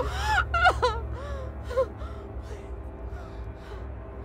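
A woman sobbing and wailing in short, gasping cries that die away after about two seconds, over a low, steady music drone.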